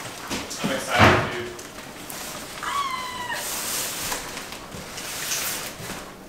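A large cardboard box thumps down on the floor about a second in, with rustling of the cardboard being handled. Near the middle a cat gives one short meow.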